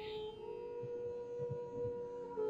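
Quiet Indian instrumental music, a long note held steady over a drone.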